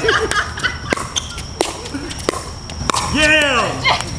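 A pickleball rally: a series of sharp hollow pops from paddles striking the plastic ball and the ball hitting the court, roughly two-thirds of a second apart. Near the end a voice lets out a falling cry as the rally ends.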